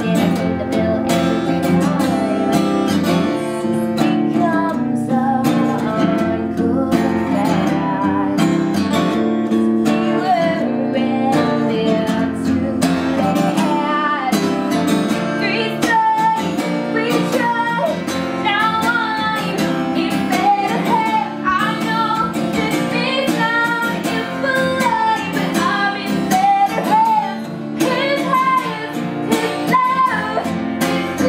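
A woman singing a pop song live, accompanied by a strummed guitar. The voice climbs and holds higher notes in the second half.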